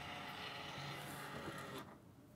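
Quiet room tone: a faint steady hum with no distinct events, dropping away just before the end.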